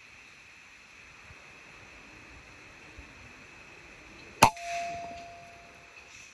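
An air rifle shot about four and a half seconds in: one sharp crack, then a thin metallic ring held on one pitch for about a second and a half, with a fading rush of noise under it.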